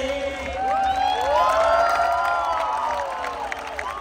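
Large outdoor concert crowd cheering and whooping with clapping at the end of a song, many voices rising and falling over one another. A held final note dies away about half a second in.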